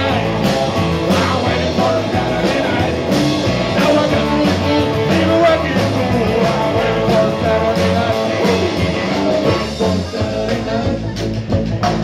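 Live amplified blues-rock band playing: electric guitars, electric bass and drum kit with a steady, driving beat.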